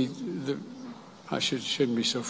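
A man speaking into a podium microphone: a few short words, a pause, then more speech.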